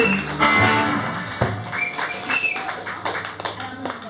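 A live band's closing chord on guitars and bass ringing out and fading away, followed by scattered sharp taps over fading talk.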